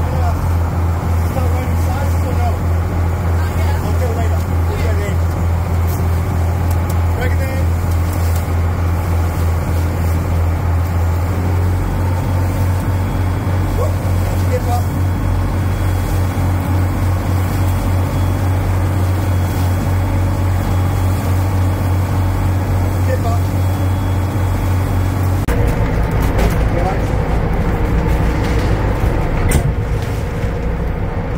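A motor engine running steadily with a loud, low drone. Its note shifts about 11 seconds in and again about 25 seconds in.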